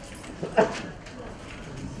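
One short spoken syllable from a man's voice about half a second in; otherwise quiet room tone.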